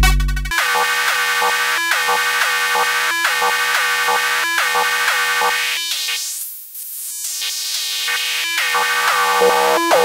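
Metal-o-tron II Eurorack metallic percussion voice playing a steady rhythm of clangy, bell-like synthesized hits after the deep kick drum cuts out about half a second in. Around the middle, as a knob is turned, the sound thins to its top end and dips in level, then fills back out.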